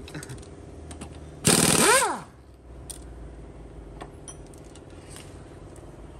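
An impact wrench fires once, about one and a half seconds in, in a short loud burst whose motor pitch rises and falls within under a second. Beneath it a machine hums steadily, with a few faint clicks later on.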